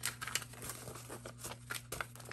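Paper dollar bills being picked up and handled, giving a run of light, irregular crinkles and flicks.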